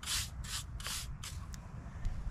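Hand strokes rubbing across a marble grave marker: three quick scrubbing strokes, about three a second, that stop about a second in.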